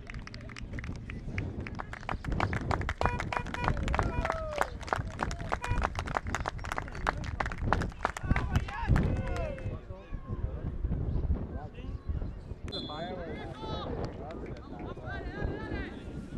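Rapid hand clapping with shouting voices at an outdoor football match, the clapping stopping about nine or ten seconds in. After that come scattered shouts and calls from the pitch.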